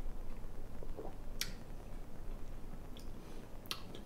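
Faint mouth sounds of a man sipping a shot of mint-lime liqueur and tasting it, with two or three short lip-and-tongue smacks, one about a second and a half in and the others near the end.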